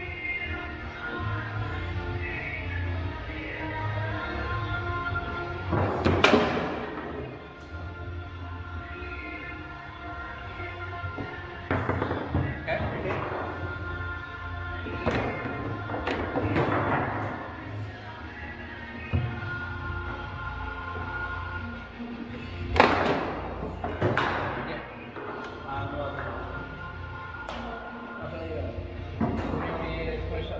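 Foosball play: sharp knocks and thuds of the ball and rods on the table, with two hard shots standing out, about six seconds in and again about two-thirds of the way through, over steady background music in the room.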